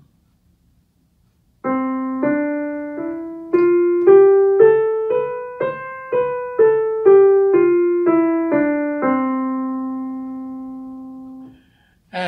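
Yamaha digital piano playing a one-octave C major scale slowly, about two notes a second. It goes up from middle C to the C above and back down. The final middle C is held and dies away.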